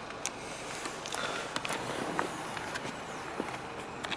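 Steady background hiss with a few faint, scattered clicks and rustles of handling and movement, the first as the headlight switch is turned.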